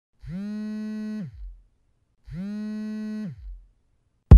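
Two identical low electronic tones, about two seconds apart: each slides up in pitch, holds for about a second, then slides back down.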